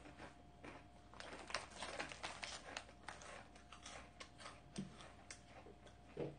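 Faint, dense dry crackling that builds about a second in and thins out near the end: crunchy snacks being chewed and a plastic wafer wrapper being handled.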